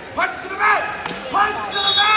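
Voices in a large gym shouting short, high-pitched calls over and over, about four in two seconds, with a couple of sharp knocks between them.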